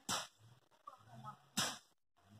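Two sharp snaps, about a second and a half apart.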